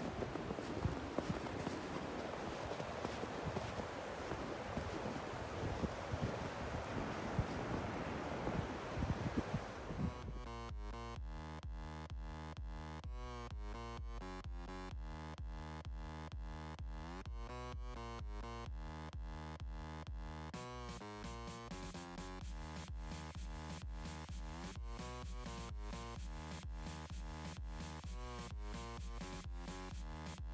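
Outdoor noise with wind on the microphone for about the first ten seconds, then electronic background music with a steady beat takes over for the rest.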